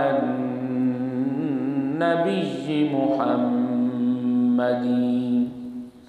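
A man's voice chanting Islamic devotional recitation in long, drawn-out melodic notes with slow wavering turns of pitch. The chant breaks briefly twice and fades out shortly before the end.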